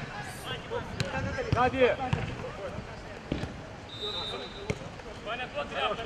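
Footballers shouting to one another, with the sharp thuds of the ball being kicked a few times.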